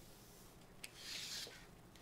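Faint rub of a DeWalt tape measure's blade sliding out of its case, with one small click just before it.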